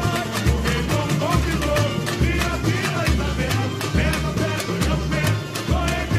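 Samba school drum section (bateria) playing samba at full volume: deep surdo beats in a steady rhythm under a dense patter of sharp tamborim and snare strokes, with singing over the drums.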